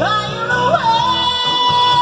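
A woman singing a rock song into a handheld microphone over a backing track with guitar. Her voice slides up and then settles, about a second in, into one long held high note.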